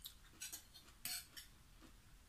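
Metal spoon clinking and scraping against a glass bowl while salad is stirred and scooped: a few short clinks, the loudest a little past the middle.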